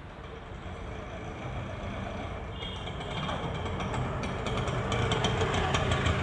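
Bajaj auto-rickshaw engine running and growing steadily louder as it drives up, with rapid clicking joining in about halfway.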